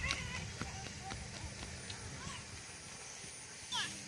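Quiet footsteps on an asphalt path, with a few faint short vocal sounds.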